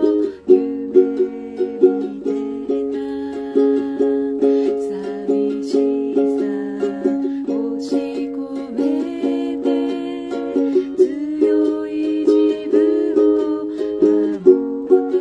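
Ukulele with a capo, strummed in a steady rhythm of quick chord strokes.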